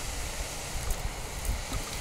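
Wind rumbling on the microphone, with a faint steady outdoor hiss and a few soft clicks.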